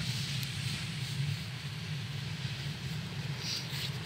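Steady outdoor background noise: a low rumble with hiss and no distinct event, plus a faint brief rustle about three and a half seconds in.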